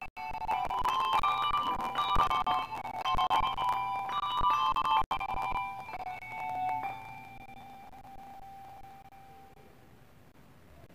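A small handbell ensemble playing a melody, each struck note ringing on. The last chord comes about seven seconds in and is left to ring and fade away.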